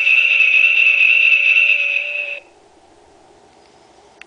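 A talking Christmas countdown snowman toy's small speaker holds one steady, high electronic whistle-like tone for about two and a half seconds, then cuts off suddenly, leaving only a faint background.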